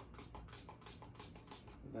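Faint, quick light clicks and taps, several a second, as gloved hands work a small plastic airbrush color cartridge.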